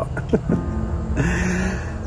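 A man laughing near the end, breathy at first, over soft background music with a steady low rumble underneath.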